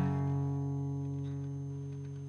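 A final chord on an acoustic guitar left to ring out at the end of the song, fading slowly with no further strums.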